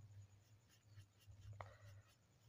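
Near silence: faint scratching of a paintbrush spreading paint across paper, over a low steady hum, with one faint click near the end.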